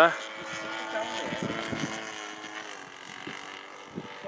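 Engine and 19x8 propeller of a radio-controlled Extra 330LT aerobatic plane in flight, a steady drone whose pitch sags slightly and fades toward the end.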